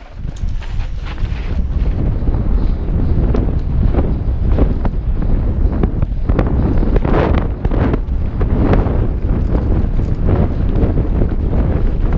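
Wind rushing over a helmet-mounted GoPro's microphone during a fast mountain bike descent, with knobby tyres rolling over dry dirt and rocks. Frequent knocks and clatters come from the bike jolting over the rough trail.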